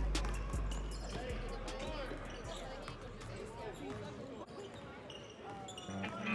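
Live gym sound of a basketball game: a ball dribbling a few times on a wooden court, sneakers squeaking and players calling out, while the bass of a rap track fades out over the first couple of seconds.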